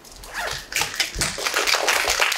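Audience applauding, a dense patter of many hands that builds up about half a second in.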